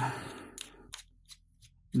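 A handful of short, light clicks of small plastic and metal parts being handled: a soldering iron's tip and knurled plastic retaining nut being fitted back onto the handle.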